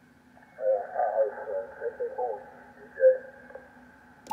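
Single-sideband voice from a 75-meter ham contact coming through the Yaesu FTdx5000MP's speaker. It sounds thin and muffled, with everything above about 2 kHz cut away by the receiver's narrow DSP filter, engaged against a station transmitting 2 kHz away. The voice fades out after about three seconds over a faint low steady tone.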